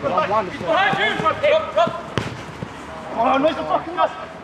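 Men shouting and calling to each other in a five-a-side football game, with the sharp thud of the ball being kicked about halfway through.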